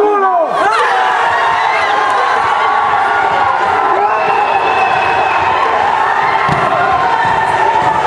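A crowd of young people cheering, shouting and screaming all at once, with long high yells over the mass of voices, celebrating a result that has just been announced.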